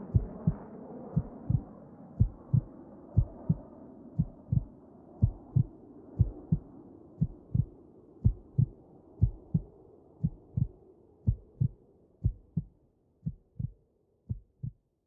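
Heartbeat sound effect, a low 'lub-dub' pair of thumps about once a second, over a soft drone that fades away. The beats grow fainter near the end.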